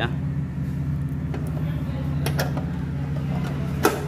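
A steady low hum runs throughout, with a few light clicks and one sharp knock near the end.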